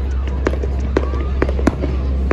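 Fireworks display going off: irregular sharp bangs and cracks, several across two seconds, over a steady low rumble.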